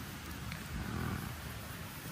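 Open wood campfire burning with a steady hiss and crackle, under a low rumble that swells about a second in.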